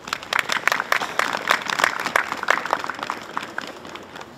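Audience applauding: a run of many irregular hand claps that starts at once and thins out over the last second or so.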